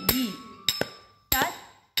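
Nattuvangam talam, a pair of small hand cymbals, struck in a rhythmic pattern of sharp metallic clinks that ring on after each stroke, about five strikes, keeping time for Bharatanatyam dance practice.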